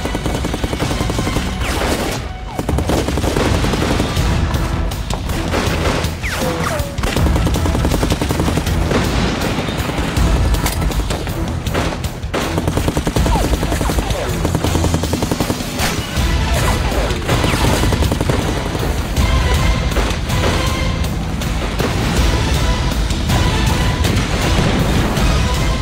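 Continuous rifle and machine-gun fire with explosions, the battle effects of a war drama, mixed over dramatic background music.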